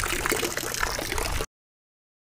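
Water splashing and pouring at the surface of the canal. It cuts off abruptly about one and a half seconds in, leaving dead silence.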